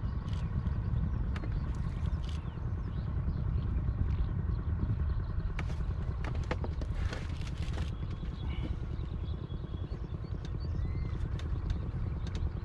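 Small engine of a wooden country boat running steadily under way, a low pulsing rumble, with a few sharp clicks over it.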